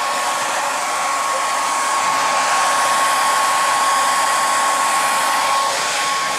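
Conair 1875 handheld hair dryer running on a steady setting: a constant rushing blow of air with a thin, steady whine from its motor.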